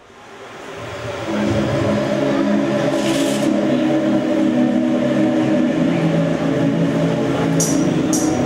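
Instrumental introduction of a song's backing track fading in, then sustained low held notes. A sharp, high percussion beat comes in near the end, about twice a second.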